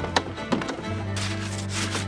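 Background music holding low sustained notes, with two sharp knocks near the start and then two short rubbing scrapes. The knocks and scrapes come from gloved hands working at a frosted metal animal-transport trailer.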